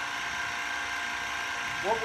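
TRS21 active recovery pump running steadily, with a constant even tone, while it pumps butane solvent through a closed-loop extraction system against the back pressure of a needle valve.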